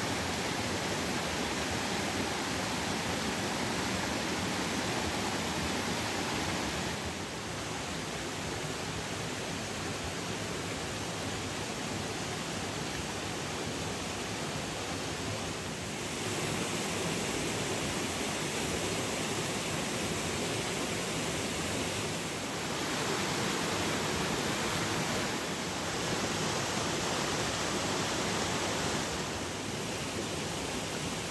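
Mountain valley stream rushing over rocks and small cascades, a steady rush of water. It drops a little in loudness about seven seconds in and rises again around sixteen seconds in.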